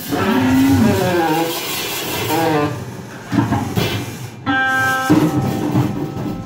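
Freely improvised jazz from a small band: saxophone, hollow-body electric guitar and drums, with sliding, bending melodic lines and one held note about two-thirds of the way in.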